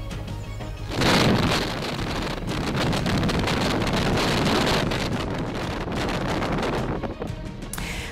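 Wind rushing over the microphone of a camera on a moving police motorcycle, with road and traffic noise, starting about a second in and easing off near the end, over a low background music bed.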